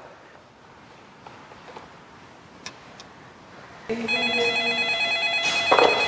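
A few faint clicks as keys are pressed on a wall-mounted landline telephone, then, about four seconds in, an electronic telephone ringer starts ringing loudly: a steady chord of tones with a slight warble, lasting about two seconds.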